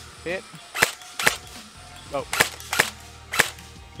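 Airsoft AK-pattern electric rifle (AEG) firing five sharp single shots at targets, some about half a second apart.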